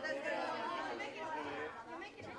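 Indistinct chatter of several children's voices talking over one another in a large room.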